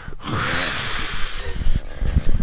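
A man breathing out hard in one long, breathy exhale of about a second and a half, strained breathing under deep-tissue Rolfing work on his chest muscles.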